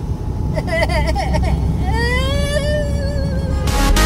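Steady low rumble of a semi truck's engine and road noise heard inside the cab. A man laughs about two seconds in, and loud music cuts in just before the end.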